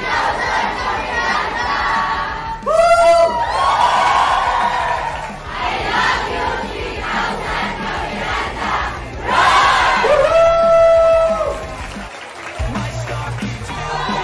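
A large crowd cheering and shouting together, with long, loud held shouts about three seconds in and again near ten seconds, and a brief dip near twelve seconds.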